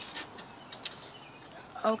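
Faint rustling and a few small clicks of handling as the cards and the phone are moved, the clearest click a little before halfway; a woman's voice begins just before the end.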